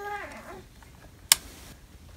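A single sharp click about a second and a half in: the switch on a battery-powered LED string light's battery box being pushed on. Before it, a short drawn-out voice sound fades away in the first half second.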